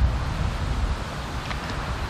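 Wind buffeting the camcorder microphone: a steady, uneven low rumble.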